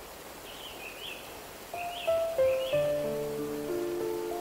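Steady rushing of a waterfall with a few short bird chirps. A bit under halfway in, a slow, gentle melody of held notes comes in over it, stepping downward and louder than the water.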